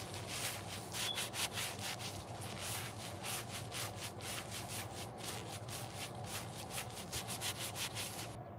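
Yellow synthetic sponge squeezed and crumpled over and over in black-gloved hands: a fast run of crackly squishes, several a second.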